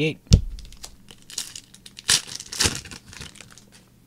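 Trading cards being handled and flipped through by hand, with papery rustling and crinkling in short bursts. A single sharp tap about a third of a second in.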